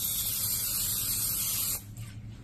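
Aerosol cooking-spray can hissing steadily as oil is sprayed into a metal muffin tin, cutting off shortly before the end.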